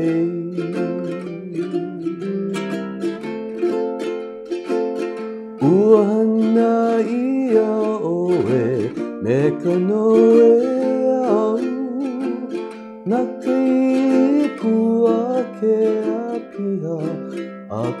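Ukulele strummed in chords in the key of F (F, B-flat, C7, G7) while a man sings Hawaiian-language lyrics over it.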